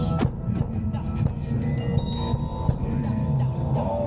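Marching band front ensemble playing mallet percussion: glockenspiel notes ring on high and bright while the xylophone strikes quick notes, over fuller sustained low notes from the rest of the ensemble.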